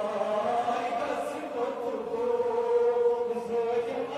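A crowd of men chanting together in long held notes, a mourning chant of the kind sung at taziya gatherings.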